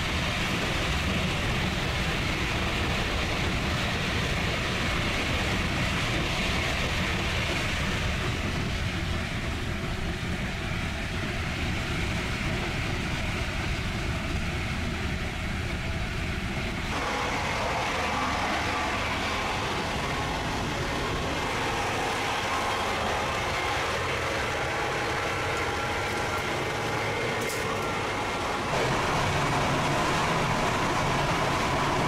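Steady running noise of a moving passenger train heard from inside the coach: a continuous rumble of wheels on rail. About halfway through the sound changes and grows brighter and harsher as the gangway between carriages is crossed.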